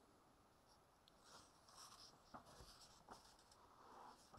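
Faint rustle of paperback book pages being flipped by hand, with a couple of soft paper ticks past the middle.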